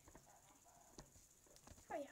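Near silence: quiet room tone with a few faint small clicks, and a brief vocal sound right at the end.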